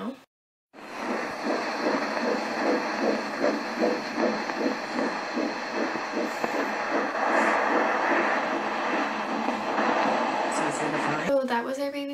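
Fetal heartbeat picked up by a handheld Doppler and played through its speaker: a rapid, even pulsing whoosh over a steady hiss, starting about a second in and stopping shortly before the end. The rate is 148 beats a minute, within the normal range for a fetus.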